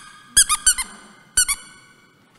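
Rubber squeaky dog chew toy squeezed in quick bites, giving a run of four short squeaks and then two more about a second later, each squeak rising and falling in pitch.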